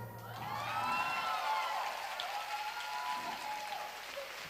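Audience applause with cheering cries rising and falling over it, as a song ends.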